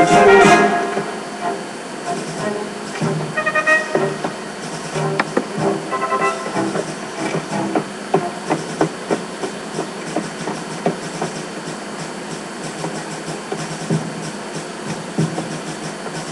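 Cartoon soundtrack played through a TV speaker: a brass-led music cue ends in the first second, followed by a quieter stretch of scattered small clicks and a few short pitched notes.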